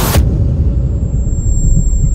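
Cinematic logo-reveal sound effect: a loud whooshing hit right at the start, then a deep, steady rumble with a thin high tone above it.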